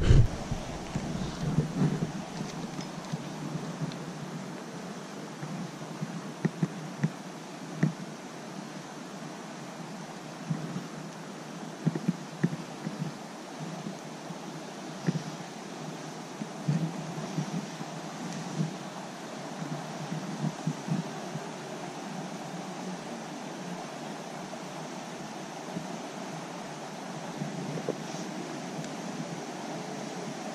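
Steady hiss of running creek water, broken by scattered short clicks and knocks from handling a fishing rod and reel.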